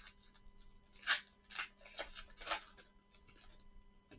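A foil trading-card pack being opened by hand, a few short crinkling rustles of the wrapper.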